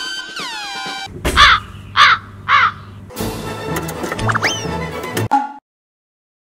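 Edited comedy sound effects: a run of falling electronic tones, then three loud crow caws about half a second apart, then a short musical sting with a rising whistle that cuts off abruptly into silence.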